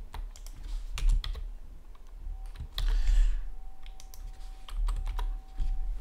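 Computer keyboard typing: quick, irregular key clicks as two lines of an equation are typed out, with a short breathy hiss about halfway through.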